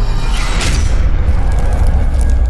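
Cinematic logo-reveal sound effect: a deep, sustained bass boom with a short whoosh sweeping through about half a second in.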